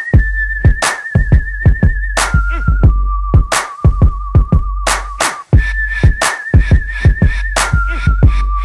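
Hip hop instrumental beat: a whistle-like lead melody with a slight wobble, stepping up and down between a few notes, over deep sustained bass and sharp, regular drum hits.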